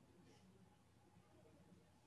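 Near silence: faint room tone on a video-call line.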